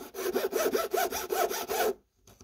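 Flat metal hand file rasping against the edge of a fibreglass PCB in quick back-and-forth strokes, about five a second, stopping just before the end. The slot is being filed wider because it is a tad too small for the LED to fit.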